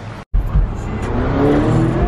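Lamborghini Urus twin-turbo V8 accelerating, its engine note climbing in pitch from about a second in. A brief moment of dead silence comes just before it.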